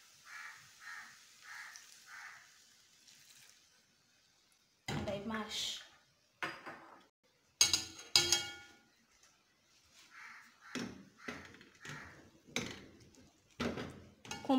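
Metal potato masher knocking and clanking against a pot of boiled potatoes as they are mashed, with a sharp ringing clang about eight seconds in and a run of quick knocks near the end.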